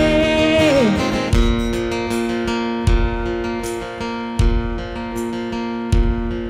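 A song: a held sung note that falls away about a second in, then an instrumental passage of guitar chords struck about every second and a half.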